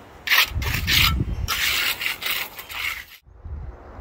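Steel trowel scraping and pressing across wet concrete, a run of about five rough strokes, as the foundation concrete is worked level.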